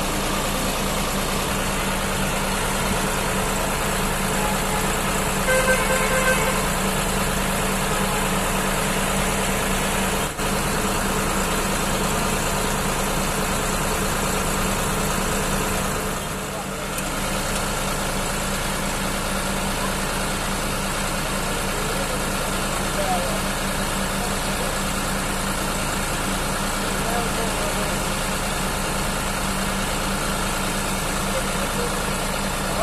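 John Deere 5210 tractor's three-cylinder diesel engine idling steadily.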